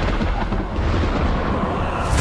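Deep rumbling rush of noise, a film sound effect for a wall of freezing mist surging across the sea.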